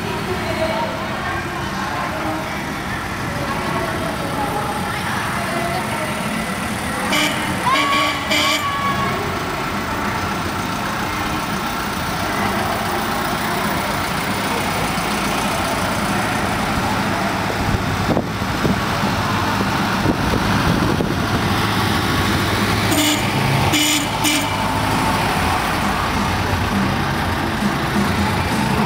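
A slow convoy of old vans and box trucks driving past, a steady low engine rumble with a few short sharp clatters about a quarter of the way in and again near the end.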